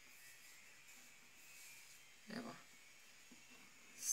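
Near silence: a ballpoint pen faintly scratching on paper, with one brief soft vocal murmur a little past two seconds in.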